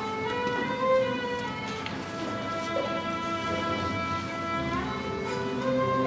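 String orchestra playing slow, sustained bowed chords. The notes move to new pitches with brief slides right at the start and again a little before the end.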